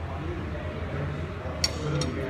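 Cutlery clinking once against a plate, a sharp bright tick about one and a half seconds in, over a steady low hum.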